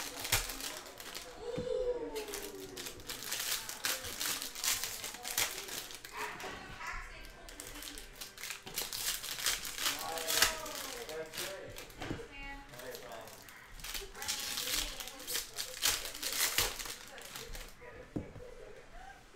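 Foil wrappers of baseball card packs crinkling as they are handled and opened by hand, in many short crackly bursts.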